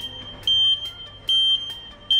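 Electronic buzzer on a face-mask scanning entry barrier sounding a repeating high-pitched alarm beep, a little more than once a second: the warning that no mask is detected.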